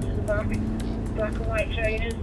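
Steady engine and road rumble inside a moving car's cabin on a wet road, with indistinct voices over it.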